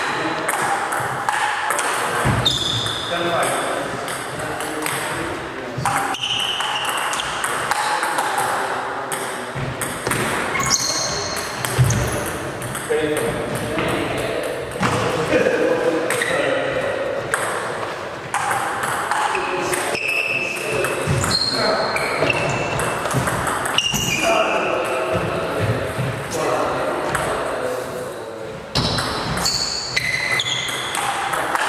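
Table tennis being played: the ball clicking off the bats and the table in rallies, with short high-pitched squeaks and pings among the hits. People talk in the background between and during points.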